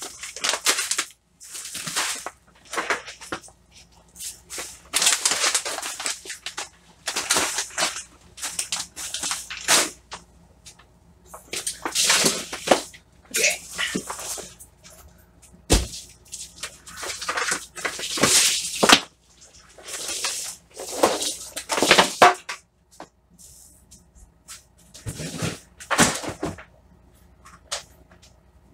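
Hand wiping and scrubbing of a grow tent's reflective floor liner with a vinegar-and-water cleaner: irregular hissing rub noises, roughly one a second with short pauses, and a single knock about halfway through. A faint steady hum runs underneath.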